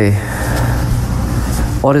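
Steady low rumble with an even hiss above it, unbroken through a pause in a man's speech; his voice starts again near the end.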